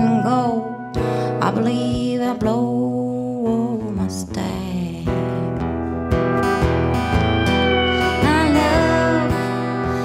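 Country music on an Infinity pedal steel guitar over strummed acoustic guitar, the steel's notes gliding and bending between pitches, most plainly near the end.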